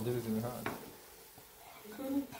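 Wooden spoon stirring a thick stew of leafy greens in a metal pot, with a low sizzle from the cooking food. There is a sharp click about two-thirds of a second in, and the stirring is quieter after that.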